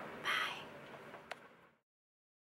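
A short raspy breath-like sound from the woman, over the faint background hiss of the compartment, then a single sharp click, after which the sound cuts off abruptly to silence.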